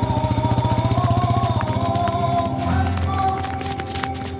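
Background film music: a slow, gently moving melody over held low notes, the bass note shifting lower about two-thirds of the way through.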